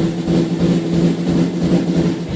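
Rock band playing live: distorted electric guitars and bass hold a steady low note over drums.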